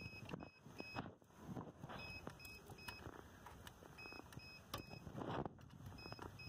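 An electronic device beeping: short, high beeps in groups of three, a set about every two seconds. Faint clicks and a short clatter of hand work on metal sound near the end.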